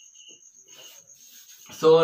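A faint, steady high-pitched insect trill, with a few short lower chirps in the first half second. A man's voice starts near the end.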